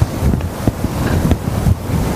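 Low rumbling noise on the microphone, like wind or handling noise, with a few soft thumps scattered through it.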